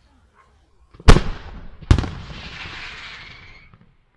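Two loud firework bangs about a second apart, the second followed by a dense hissing tail that fades out after about two seconds.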